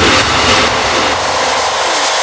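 Break in an electronic dance track: the kick drum and bass drop out, leaving a falling synth sweep and a dense whooshing noise wash whose low end fades away.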